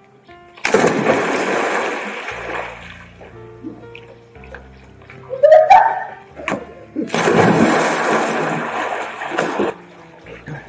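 Two big splashes of people plunging into a swimming pool, one about half a second in and another about seven seconds in, each washing off over a couple of seconds, over background music.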